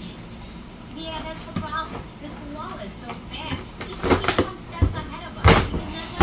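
A dog tearing and biting a corrugated cardboard box: a few sharp rips and crunches about four seconds in, and the loudest crunch of cardboard about five and a half seconds in.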